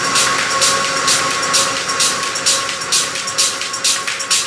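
Techno track in a breakdown: the kick drum drops out, leaving a fast, even pattern of hi-hat ticks over a held synth tone.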